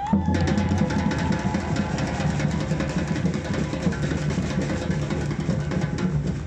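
Live street drum group on large metal-shelled marching drums struck with sticks, playing a fast, dense rhythm that kicks in right at the start.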